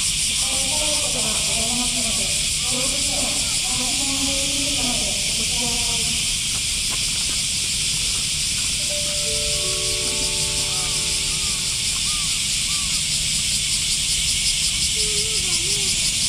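A loud, steady, shrill buzzing chorus of summer cicadas with a fine pulsing texture. Faint human voices can be heard under it in the first few seconds.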